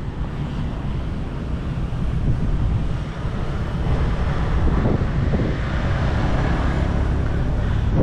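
Wind buffeting the microphone, a fluctuating low rumble, over the steady sound of road traffic.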